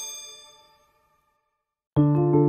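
The last strike of a Patek Philippe 6301P Grande Sonnerie's chiming gongs ringing on and fading away in the first half-second or so, followed by silence.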